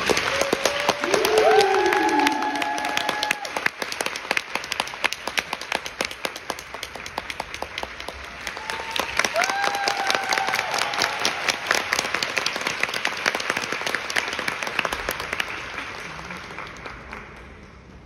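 Concert-hall audience applauding, dense clapping with a few drawn-out cheering calls about a second in and again about nine seconds in. The applause thins and dies away near the end.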